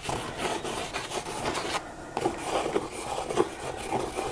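Pencil scribbling on journal paper in quick, repeated scratchy strokes, drawing through still-wet acrylic paint.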